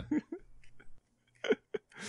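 Short bursts of laughter from a person: a couple of quick chuckles just at the start, then near silence, and another brief chuckle about a second and a half in.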